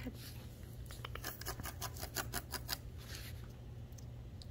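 Kitten's claws scratching at a corrugated cardboard scratch pad: a quick run of short, scratchy strokes, about six a second, in the middle of the stretch.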